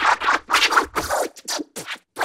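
Cartoon fart sound effect, heavily distorted by a meme 'sound variation' edit, heard as a quick run of about six short noisy bursts that get shorter towards the end.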